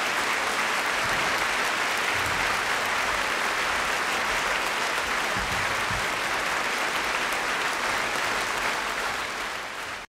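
Large concert-hall audience applauding steadily, fading out near the end.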